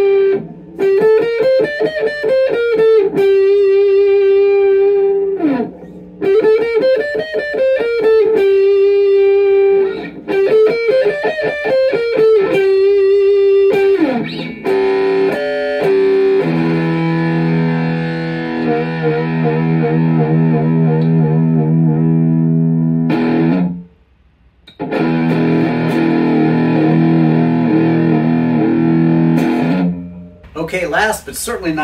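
Mustang-style electric guitar played through a Fender amp with some effect or drive. For about fourteen seconds a held note alternates with three phrases whose notes bend up and back down; then come sustained ringing chords, broken by a short stop about 24 seconds in.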